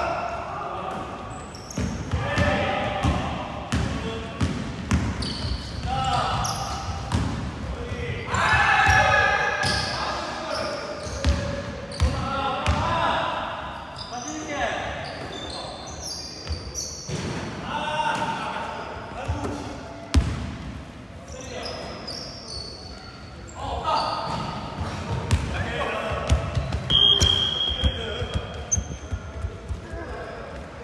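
Basketball game in a large gym: a basketball dribbled and bouncing on a hardwood court, players shouting to one another, and short high squeaks of sneakers on the floor, echoing in the hall.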